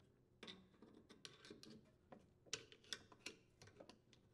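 Faint, irregular clicks and taps of a flathead screwdriver against the plastic cog of a washer drive motor coupler as it is worked off the gear case drive shaft.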